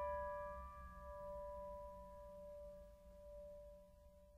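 The last piano notes of the song dying away: a held chord fades slowly, with one mid-pitched note ringing longest, down to near silence by the end.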